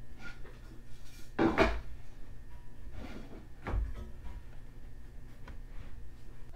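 A large steel winch mounting plate and wooden strips being shifted and set into place on a wooden workbench: a few scraping knocks, the loudest about a second and a half in and another near four seconds in.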